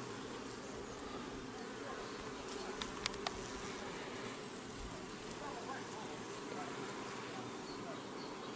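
Steady hum of honeybees around an open hive with a frame of bees held up, and two faint clicks about three seconds in.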